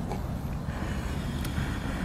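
Steady low rumble of wind on the microphone with outdoor background noise, and one faint click about a second and a half in.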